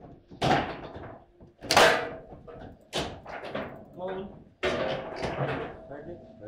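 Table football (foosball) play: four hard knocks about a second apart as the ball is shot and struck by the rod figures and slams against the table, the loudest about two seconds in, one of them the goal being scored.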